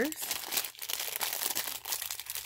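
Clear plastic bag crinkling as it is handled and squeezed in the hands, a quick, irregular run of crackles.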